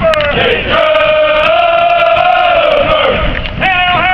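Men's voices chanting together in unison in long held notes that bend slowly in pitch, with crowd noise beneath.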